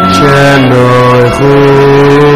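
Men singing a slow, chant-like melody in long held notes, each lasting about half a second to a second before stepping to the next pitch, with a brief dip about a second and a half in.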